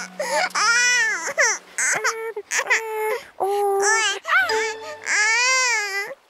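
A cartoon baby's voice crying in a series of long, high wails that rise and fall in pitch, with short breaks between them.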